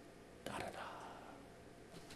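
A pause in a man's talk: a faint, breathy whisper-like sound from the speaker about half a second in, otherwise quiet room tone.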